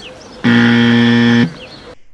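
Buzzer sound effect: one loud, flat buzz lasting about a second that starts and stops abruptly, marking a wrong answer, "va apare" instead of "va apărea".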